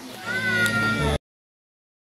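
A high, drawn-out cry, about a second long and falling slightly in pitch, over a low hum. It stops abruptly as the recording cuts off.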